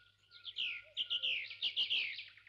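Songbird chirping: a quick run of short, high chirps, each falling in pitch, coming thicker and louder from about a second in.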